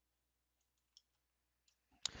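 Near silence in a pause in the talk, with one faint click about halfway through.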